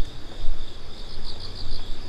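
Insects trilling steadily at a high pitch, with a run of quick pulsed chirps, about eight a second, late on. A low rumble runs underneath.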